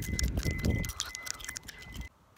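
Handling noise from a hand-held phone being carried while walking: rapid clicks, taps and rubbing on the microphone, with a low rumble that dies away about halfway through. A faint steady high whine runs underneath.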